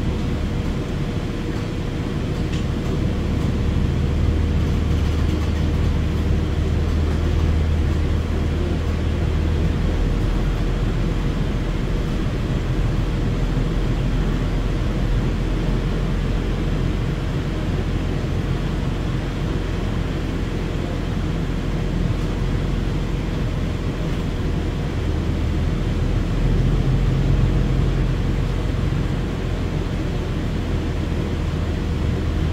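Cabin sound of a 2016 New Flyer XDE60 articulated diesel-electric hybrid bus running: a steady low drone with a constant hum over it. About ten seconds in the drone drops lower, and it swells slightly near the end.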